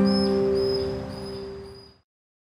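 Final acoustic guitar chord ringing on and slowly fading out to silence, with a faint high tone repeating about twice a second above it.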